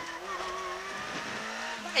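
Peugeot 106 rally car's four-cylinder engine heard from inside the cabin, running at a fairly steady note with only slight shifts in pitch as the car takes a left hairpin.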